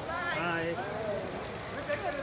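A woman's voice, a brief high-pitched call or exclamation without clear words, over a steady hiss of falling rain.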